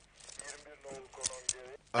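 Quiet voices murmuring, with two short, sharp clicks a quarter-second apart about a second and a quarter in.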